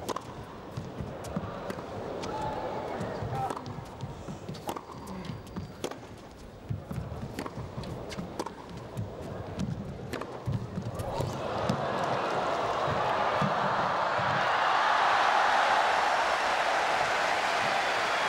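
A tennis rally, with racquet strikes on the ball about once a second. About eleven seconds in, the crowd breaks into applause as the point ends, building up and staying loud.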